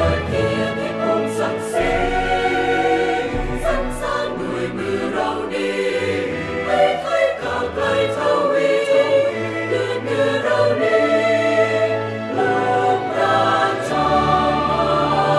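Background music: a choir singing long, sustained notes over instrumental accompaniment.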